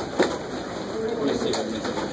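Only a man's voice, murmuring a low, wordless hesitation sound, with one sharp tap a fraction of a second in.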